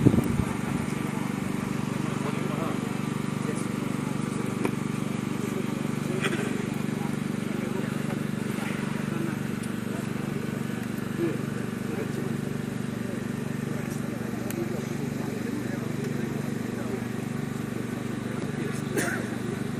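A steady engine hum with a slight regular pulse, under the indistinct voices of a crowd, with a few faint clicks.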